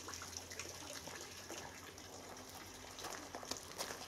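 Faint, steady trickle of running water from a garden pond, with a few light clicks and rustles.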